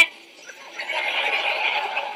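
Studio audience laughter, swelling in about a second in and holding steady.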